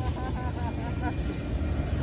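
Union Pacific auto train's autorack freight cars rolling past close by, a steady low rumble of wheels on rail.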